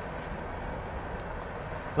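Steady low rumble and hum of an idling vehicle engine, with no distinct events.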